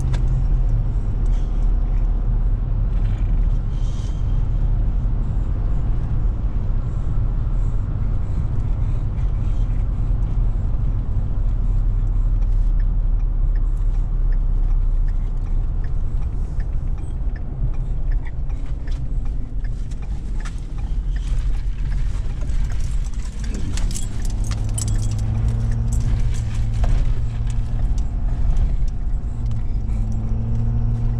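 Steady low engine drone and road noise inside a moving Ford Super Duty pickup's cab, with light metallic jangling from things hanging in the cab, busiest in the last third. About 23 seconds in the engine note dips and changes as the truck slows.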